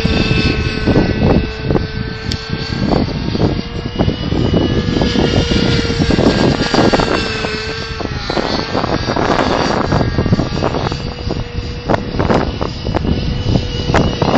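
Synergy N5 nitro R/C helicopter flying overhead: a steady engine and rotor whine that sags in pitch and recovers about halfway through. The sag fits the bogging that wrong settings and blades caused on this flight.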